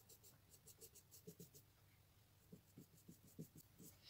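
Faint scratchy strokes of a small paintbrush working thick acrylic paint into a rough, textured pebble, a string of short strokes with a short lull just after the middle.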